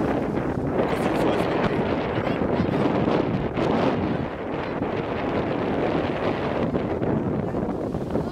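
Gusty sea wind buffeting the camera's microphone: a loud, steady rush of wind noise.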